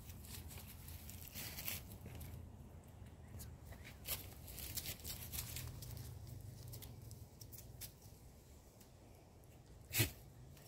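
Faint rustling and scattered light clicks of movement on grass, over a low steady hum.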